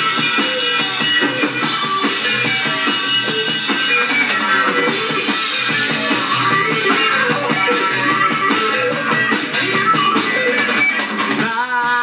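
Live rock band playing an instrumental passage with two electric guitars, bass and drums, the cymbals growing busier about halfway through. A sung line comes in near the end.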